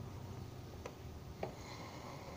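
Faint clicks and rubbing from a hand handling the plastic housing of a plugged-in electric fly zapper, twice briefly, over a low steady hum.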